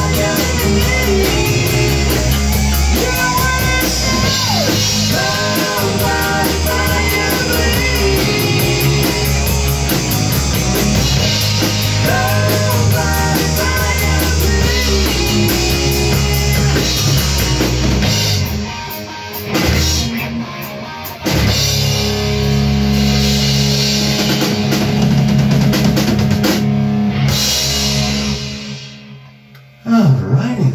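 A rock band playing live: drum kit and electric guitars with a man singing. The band drops back briefly about eighteen seconds in, comes back in, and the song ends near the end with the sound dying away.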